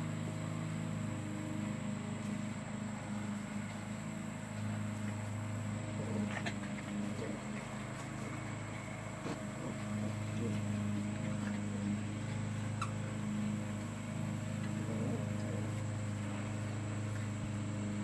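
Two puppies play-wrestling in grass, heard only as faint scuffles and a few brief small sounds over a steady low machine hum.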